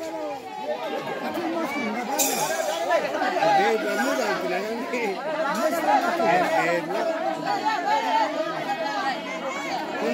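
Crowd chatter: many people talking at once in overlapping voices, at a steady moderate level.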